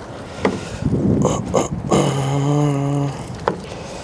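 Metal tongs clicking and scraping on a sheet pan as a smoked brisket is lifted and laid onto butcher paper. Halfway through, a man's low hum of effort is held for about a second.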